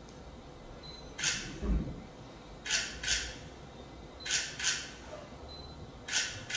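Long hair rustling in several short swishes, mostly in close pairs, as hands run through it and toss it from side to side, with one soft low thump a little under two seconds in.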